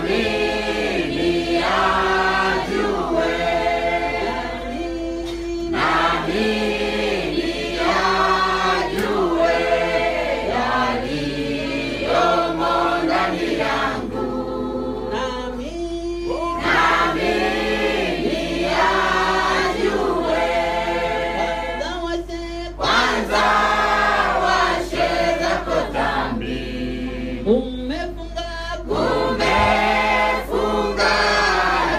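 Church congregation singing a hymn together, many voices at once, in sung lines separated by short pauses.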